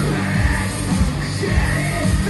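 Industrial metal band playing live at full volume: drums with a steady kick, electric guitar and keyboards under a singer's vocal into the microphone.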